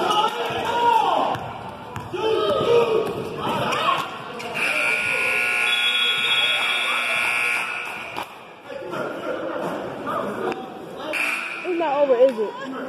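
Gym scoreboard buzzer sounding one long steady tone for about three seconds, starting about four and a half seconds in: the game clock running out at the end of a period.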